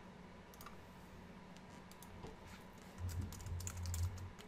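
Typing on a computer keyboard: a few scattered key clicks, then a quicker run of keystrokes near the end, with a low rumble under it.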